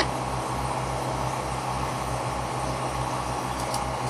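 Towboat's engine running steadily underway, with a low throb pulsing about four times a second over the rush of water along the hull. A single click sounds right at the start.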